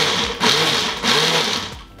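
Single-serve countertop blender running, blending ice cream and a carbonated drink into a thick shake; the motor winds down near the end.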